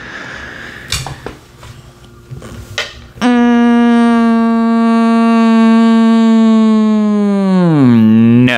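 A few soft clicks over a faint hiss, then a loud, steady single note held for about four and a half seconds, its pitch sagging away at the end.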